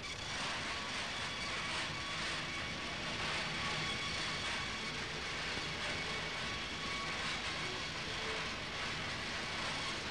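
Woodworking machinery running in a furniture factory: a steady mechanical noise with a faint hum through it, at an even level throughout.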